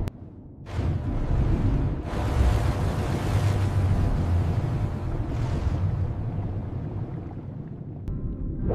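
Cartoon sound effect of water jets rushing out underwater: a surging whoosh begins about a second in, swells about two seconds in, and slowly fades near the end.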